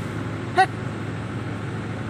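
Steady drone of a tractor engine running for paddy threshing, with one short high vocal sound about half a second in.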